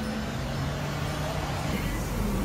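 Steady outdoor street noise with a low engine hum, like a motor vehicle running.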